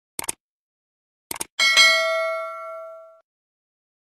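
Subscribe-button sound effect: two quick double clicks, then a bright bell ding that rings out for about a second and a half.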